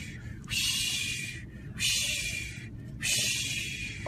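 A man making three long, breathy hissing 'shhh' sounds with his mouth, each about a second long with short gaps between, imitating gusting wind.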